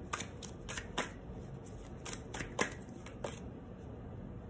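Tarot cards being shuffled by hand: a string of irregular short snaps and flicks as the deck is worked to draw a clarifier card.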